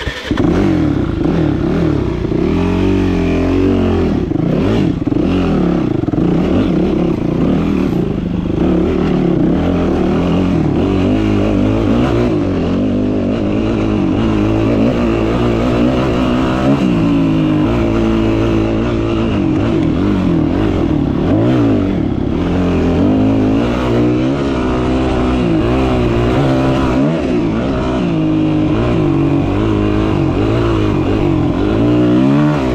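Yamaha WR250F four-stroke single-cylinder dirt bike engine firing up right at the start, then revving and riding, its pitch rising and falling again and again with the throttle and gear changes.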